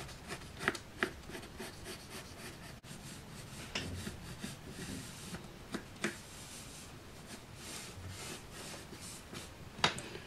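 Pencil scratching on a sheet of card as a curve is drawn through marked points, with hands rubbing over the card and a few light clicks.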